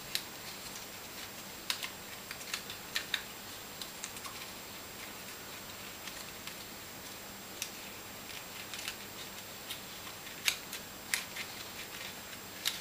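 Scattered light clicks, taps and rustles of thin card being handled: the cut card strips of a sliceform paper arch being woven through slots by hand, over a faint steady hiss. The clicks bunch together in the first few seconds and again near the end.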